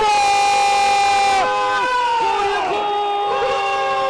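Football TV commentator's drawn-out goal shout: one long cry held on a single high pitch for about a second and a half, dropping off, then a second long held cry near the end.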